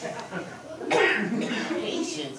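A person's voice making wordless sounds, with a sudden cough-like burst about a second in.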